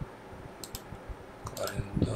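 Computer mouse clicking: a couple of quick clicks just over half a second in, and another cluster near the end.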